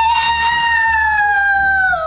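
A boy's long, high-pitched cry of mock dismay, held for about two seconds. Its pitch sags slowly and then slides down at the very end.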